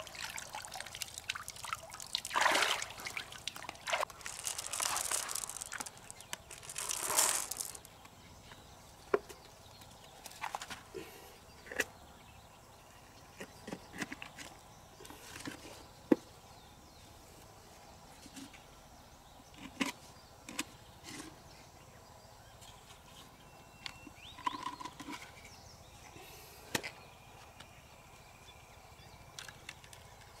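Water splashing and sloshing for the first several seconds as a large freshwater mussel is lifted out of shallow river water. After that come scattered small clicks and scrapes of a knife working at the mussel's shell.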